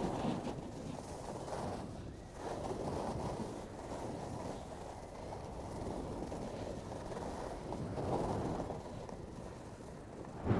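Wind rushing over the microphone and skis hissing over groomed snow during a downhill run, the noise swelling and fading with the turns.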